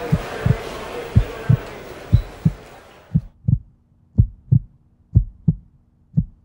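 Heartbeat sound effect: low double thumps, lub-dub, about once a second. A noisy wash underneath fades out about halfway through.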